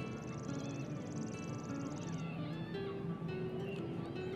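Soft background music with held notes. A high, rapid trill sounds over it for about the first two seconds, then stops.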